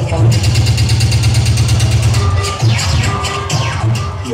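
Funk music with a heavy, sustained bass and a steady fast beat.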